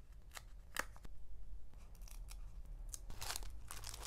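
A few sharp clicks of metal tweezers picking and pressing down paper number stickers, then paper sticker sheets rustling and sliding over one another.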